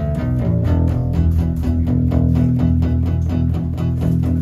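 Two guitars played live in an instrumental passage: an acoustic guitar strummed in a steady rhythm over sustained low bass notes, with no singing.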